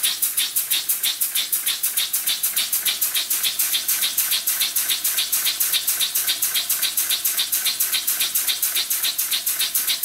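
Homemade brass oscillating steam engine running on steam, each exhaust puff a short hiss in a fast, even rhythm of several puffs a second. Steam is leaking from the engine as it runs.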